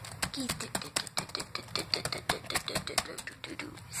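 Laptop keyboard keys being pressed rapidly, many at once, in a fast, uneven run of plastic clicks.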